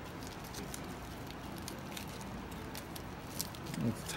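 Faint sticky crackling and small ticks as fingers peel and pull apart the gluey flesh of a ripe jackfruit pod, scattered irregularly over a steady background hum.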